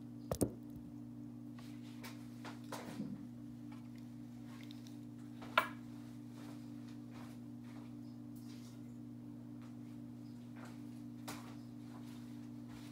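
Steady low electrical hum, with a few light knocks and clicks from handling on the table: a sharp double knock about half a second in, a smaller cluster near three seconds and another sharp knock about five and a half seconds in.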